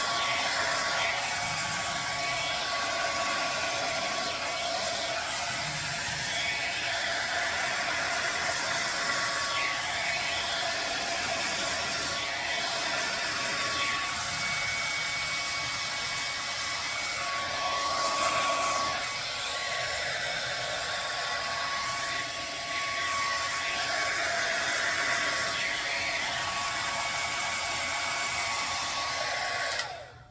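Handheld hair dryer running steadily as it blows wet acrylic paint outward across a canvas, with a faint whine that comes and goes. It switches off at the very end.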